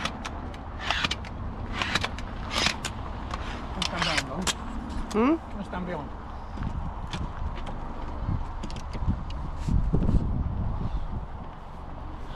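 Telescopic aluminium roof-tent ladder being pulled out to length, its sections sliding and latching with a series of sharp metallic clicks and knocks, most of them in the first half, over a low wind rumble.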